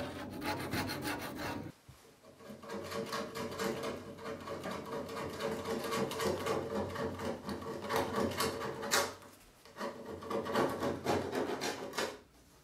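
Hand scraper rasping old seal material and residue off the edge of a fiberglass pop top in quick repeated strokes, stopping briefly twice.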